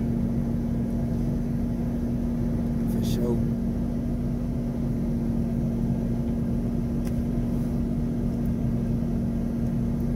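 Steady low hum of a running car heard inside its cabin: one constant droning pitch over a low rumble, with a faint tick about three seconds in.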